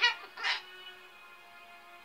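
Umbrella cockatoo giving a short raspy call about half a second in, followed by faint steady music from a television soundtrack.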